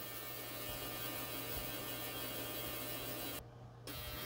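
VCU Tech ultrasonic cleaner running with its lid on, heating and degassing its water: a steady low electrical hum. The hum cuts out briefly near the end.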